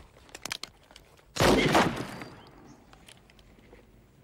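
A few sharp clicks, then a revolver shot about a second and a half in, loud and sudden, with an echo that fades over most of a second.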